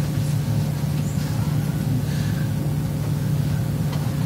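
Steady low hum of room and background noise, with a few faint, brief small sounds over it.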